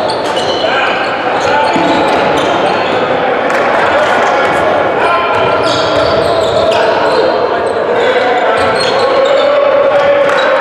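Live basketball play in a gym: a ball bouncing on the hardwood, shoes squeaking on the court and indistinct shouts from players and spectators, all echoing in the hall.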